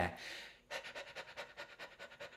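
A man panting quickly in and out through the mouth on an "ee" vowel, an even run of short breaths at about six a second, starting just under a second in. It is a singer's warm-up for working the diaphragm.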